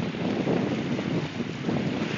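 Wind buffeting a phone microphone, a fluctuating low rush, over small waves washing onto a sandy beach.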